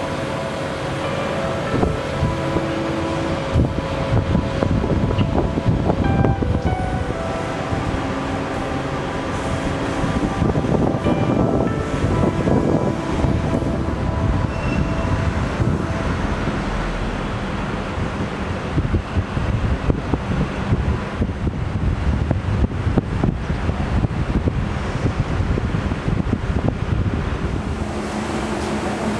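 Wind rushing over the microphone with a low, continuous rumble. Quiet music with held notes plays underneath for about the first half.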